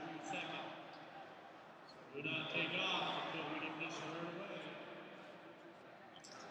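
Indistinct voices in a large indoor sports hall. A man's voice is loudest from about two seconds in.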